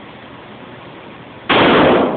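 A single gunshot about one and a half seconds in, very loud and ringing on in the reverberant indoor range.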